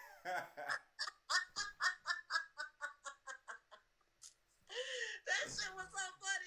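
People laughing hard: a long run of rhythmic 'ha-ha' pulses, about five a second, that fades away over a few seconds, then after a brief lull a fresh burst of laughter near the end.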